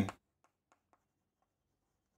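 Chalk writing on a chalkboard: a few very faint, short ticks and scrapes of the chalk as a word is written.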